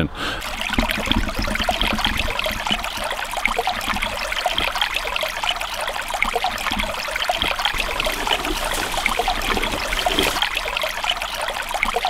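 Shallow stream of water trickling over rocks, a steady run of water.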